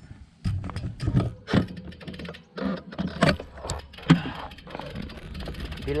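Wind buffeting the microphone of a bike-mounted action camera as a road bike gets rolling downhill, a low rumble that sets in about half a second in. Irregular sharp clicks and knocks from the bike and mount run through it.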